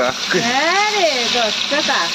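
Steady sizzling hiss of besan-coated potatoes frying in oil in a steel kadai as they are stirred with a spoon. Over it, a voice draws out one long sung note that rises and falls, starting near the beginning and lasting about a second.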